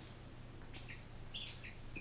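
Faint squeaks from a plush acorn dog toy's squeaker being squeezed, about three short, high squeaks in the second half.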